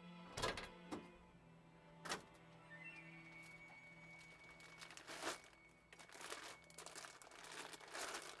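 Car door and a heavy sack being handled: three quick thuds in the first two seconds, then a long stretch of crinkling and rustling from about halfway through. A faint thin high tone runs under the rustling.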